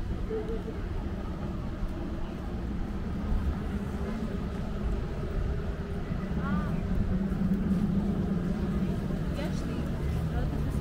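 Steady low rumble of outdoor street ambience, with faint voices of passers-by.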